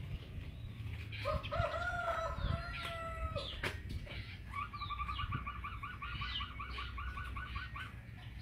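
A rooster crowing once, one long call of about two seconds. Then a rapid run of short repeated notes, about seven a second, for about three seconds, with small birds chirping faintly.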